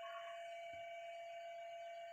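Faint, steady sizzling of a paratha frying in ghee on an iron tawa, under a constant background tone.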